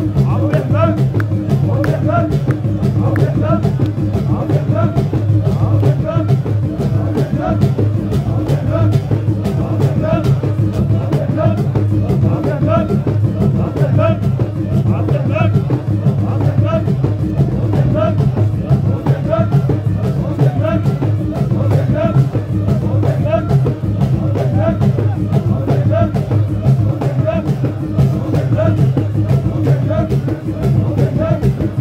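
Traditional folk music: drums beating a fast, steady rhythm with men's voices chanting over it, played by a seated troupe.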